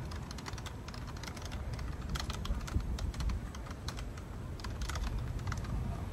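Typing on a compact keyboard: irregular runs of key clicks, busiest in the middle and again near the end, over a steady low rumble.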